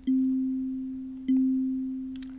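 Sonic Pi's kalimba synth playing middle C (MIDI note 60) at amp 4, struck twice about a second and a quarter apart. Each note is a single pure tone that fades slowly.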